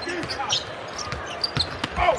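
Basketball being dribbled on a hardwood arena court, a few sharp ball bounces over a steady murmur of arena crowd noise.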